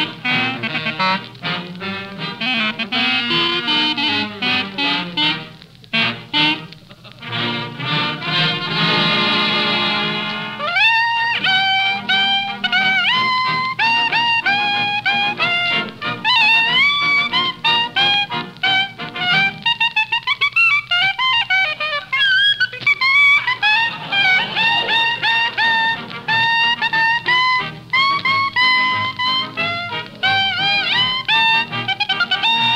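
Swing-style band music with brass and reeds. About nine seconds in, a rising run leads into a fast melody of quick notes.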